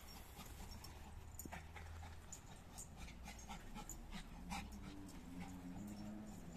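Faint sounds of a small Lhasa Apso–Shih Tzu cross dog panting, among scattered short ticks and scuffs. A low wavering tone comes in near the end.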